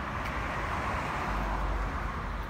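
Street traffic: a car driving past on the road, its tyre and engine noise swelling through the middle and easing off, over a low rumble.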